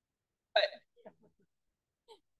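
A woman's short laugh into a handheld microphone: one sharp burst about half a second in, then a few fainter breathy pulses that quickly die away.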